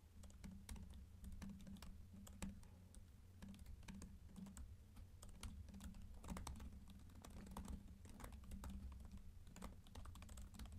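Faint typing on a computer keyboard: a steady run of quick, irregular keystrokes.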